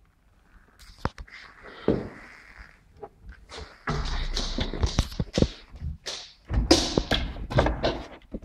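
Knocks and thuds against cabinet fronts as a drawer is pulled open and a dog's paws scrabble at its edge, over rumbling handling noise from a hand-held camera.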